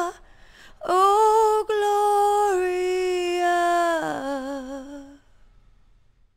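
A high solo voice singing long held notes with vibrato, without accompaniment. It breaks off at the start, comes back about a second in with a long held note, steps down to a lower note about four seconds in, and fades out shortly after.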